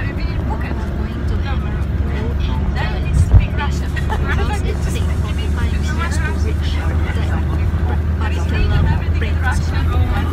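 Steady low rumble of a car cabin on the move, under a woman talking close to the microphone. A brief thump comes about three seconds in.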